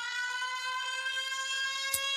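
A single held electronic tone, rich in overtones and drifting slightly upward in pitch, with a brief click near the end.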